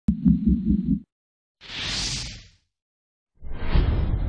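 Intro sound effects for an animated channel logo. A low pulsing sound, about five pulses in a second, cuts off sharply after about a second. A high rushing noise then swells and fades, and near the end a deep rumbling hit sets in and keeps going.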